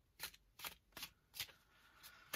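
A deck of Klimt Tarot cards being shuffled by hand: four light, separate snaps of cards dropping onto the deck, two or three a second.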